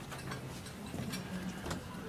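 Banquet hall room tone during a pause before a speech: a handful of light, irregular clicks and clinks over a faint low murmur from the crowded room.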